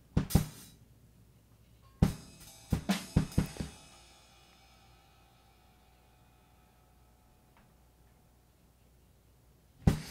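Drum-kit sample (kick, snare and cymbal) played through the Airwindows DeHiss filter-gate plugin: a hit at the start, a quick run of several hits about two seconds in, then the cymbal rings down into silence. As the sound gets quiet, its treble fades first, stepped on by the plugin's lowpass.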